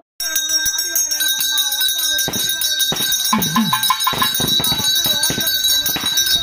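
Brass hand bell rung continuously, its ringing steady throughout, with voices and irregular sharp strikes from a couple of seconds in.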